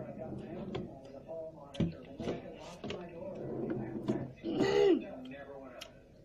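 A girl's voice making wordless sounds and throat noises as she reacts to the sourness of a candy in her mouth, with one longer drawn-out vocal sound about five seconds in.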